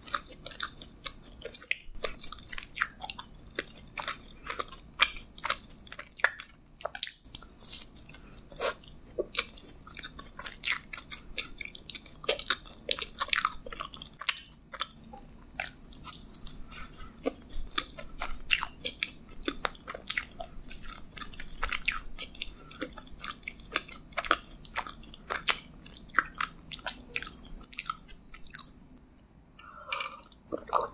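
Close-miked biting and chewing of a mint chocolate donut: a steady run of soft, wet mouth sounds and many sharp clicks. It quiets briefly just before the end.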